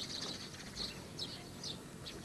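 Small birds chirping: short, high calls repeated about twice a second.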